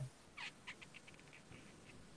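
Near silence: faint room tone over a video call, with a few brief, faint high-pitched squeaks or clicks in the first half.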